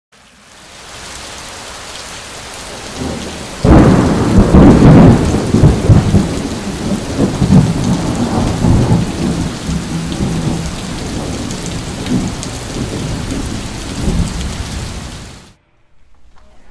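Steady rain, then a sudden loud thunderclap about four seconds in that rumbles on and slowly fades, cutting off abruptly just before the end.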